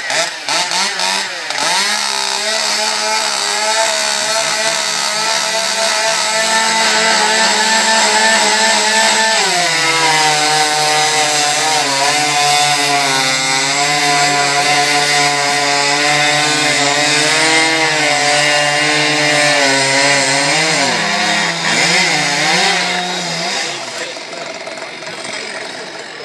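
Two-stroke chainsaw running at high revs; about ten seconds in its pitch drops and holds lower as the chain cuts into a log, then rises again and dies away near the end.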